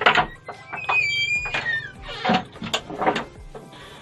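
Wooden store door being unlocked and opened, with a series of knocks and clatter from its chain and lock and a brief high squeak about a second in, over background music.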